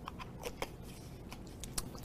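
Faint drinking sounds from a man: a scatter of small, sharp clicks and sips, several in the first second and a few more near the end.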